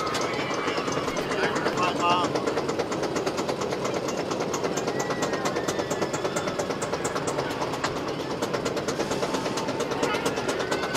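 Wildcat's Revenge roller coaster train climbing its chain lift hill: a steady, rapid clatter of the lift chain and the anti-rollback dogs clicking over the ratchet, with faint rider voices behind.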